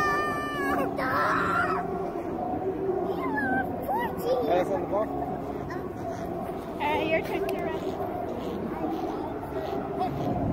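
A young child's high-pitched squeal at the start, followed by scattered short cries and voices, over a steady low hum.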